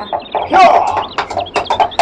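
Chickens clucking, with a run of short high peeps, as a farmyard sound effect under radio-drama dialogue.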